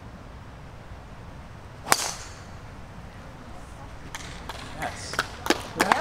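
A golf club strikes a ball off the tee: one sharp, loud crack about two seconds in. A few scattered sharp clicks follow near the end.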